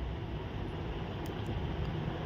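Maize-flour puri deep-frying in hot oil in a kadhai: a steady sizzle of bubbling oil, with a couple of faint pops a little over a second in.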